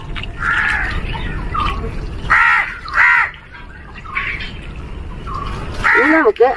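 Crows cawing a few times, the two clearest calls close together near the middle, over the steady low sound of water from a garden hose running onto soil.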